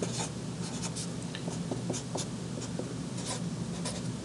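Black felt-tip marker writing on a white board: a run of short, irregular scratching strokes as a word and an arrow are written out.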